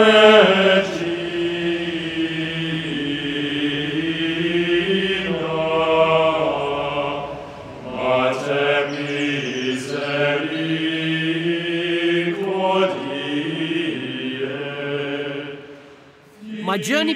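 Choral chant music: slow, long-held sung notes in unhurried phrases, with a pause about halfway through and another a few seconds later, fading down near the end.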